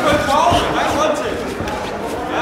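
Voices shouting in a large hall, with a few dull thuds of boxing-gloved punches landing.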